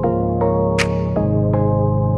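Background electronic music: sustained synthesizer chords that change about a second in, with a sharp cymbal-like percussion hit near the middle.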